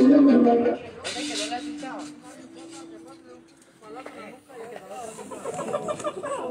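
Loud music from a street sound system stops abruptly under a second in. After that, scattered voices and a low steady hum continue at a much lower level.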